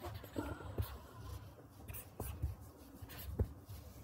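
A stylus writing on a tablet screen: light scratching strokes broken by several sharp taps, with a low steady hum underneath.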